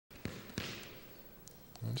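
Squash ball knocks in a rally, racket and ball striking court walls: two sharp knocks about a third of a second apart early on, each echoing briefly, then a few fainter taps.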